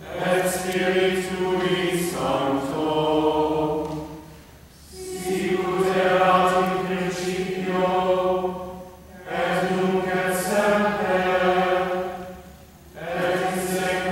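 A small mixed group of voices singing Latin plainchant together, in held phrases of a few seconds each with short breaths between them.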